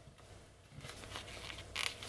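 A paper sticker sheet being handled and a sticker peeled off its backing: a faint rustle, then a short crisp rip near the end.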